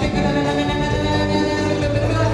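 Two women singing live into microphones, holding long notes together.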